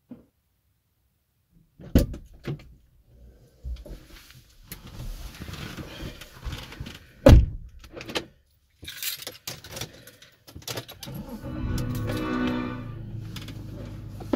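A car door is opened and someone climbs into the seat with rustles and several thunks. The door shuts with a loud thunk about seven seconds in.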